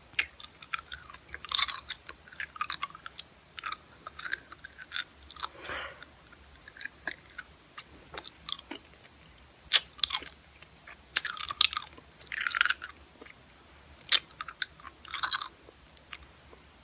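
Close-miked mouth sounds of eating a hard lollipop: irregular wet smacks, clicks and a few crunches of sucking and chewing the candy.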